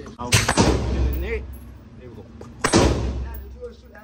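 Gunshots on an indoor shooting range. Two shots come about a quarter second apart shortly after the start, then a third about two seconds later, each followed by a booming echo.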